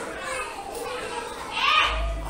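Faint children's voices and low speech in the background, with a voice starting up louder near the end.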